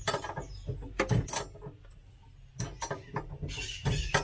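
Scattered small metal clicks and clinks of a wrench, nut and pedal linkage being handled while a suspended accelerator pedal's actuating shaft is fitted, with a quieter pause a little after the middle.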